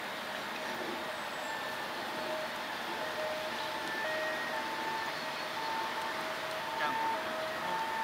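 Steady background noise with faint tones at two pitches coming and going every second or so.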